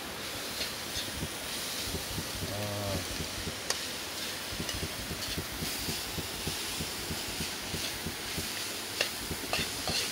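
Food sizzling in a wok over a wood fire, with a metal spoon stirring and scraping against the pan in frequent short clicks.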